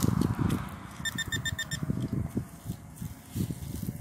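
A hand digging tool scraping and stirring dry soil, roots and grass in uneven strokes. About a second in, a short run of about six rapid high beeps sounds.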